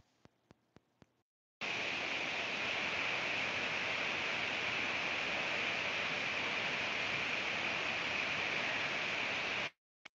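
Steady static hiss on the wireless headset microphone's audio link, which comes on suddenly about a second and a half in after a few faint ticks and a moment of dead silence, and cuts off abruptly just before the end. It is the sign of the headset connecting and dropping out on its own.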